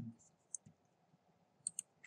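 A few faint, scattered clicks of computer keyboard keys, coming in pairs about a second apart.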